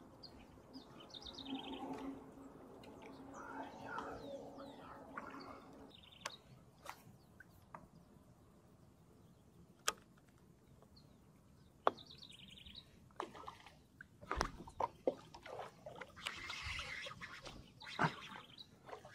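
Birds chirping in short, repeated calls, with a few sharp clicks in the middle and splashy, knocking water sounds in the last few seconds.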